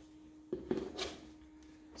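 Plastic fin of an inflatable paddle board being pushed into its fin box on the board: two sharp clicks about half a second in, then quieter handling and rubbing.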